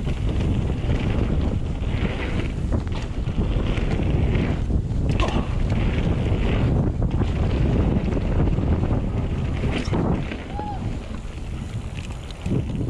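Wind rushing over a handlebar-mounted action-camera microphone as a mountain bike rides a dirt trail, with the rumble of the tyres over the dirt. The rushing eases off about two seconds before the end as the bike slows.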